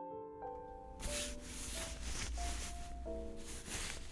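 Soft background music with sustained notes; from about a second in, a fluctuating rustling noise, as of a collar being handled and fastened on, runs on over the music.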